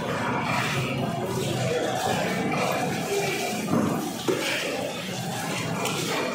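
Busy market hubbub: a dense mix of voices and background noise, with one sharp knock a little after four seconds in.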